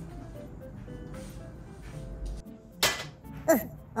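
A single short, sharp clink of kitchenware about three seconds in, over soft background music: a cooking sound taken as the cue that dinner is being made.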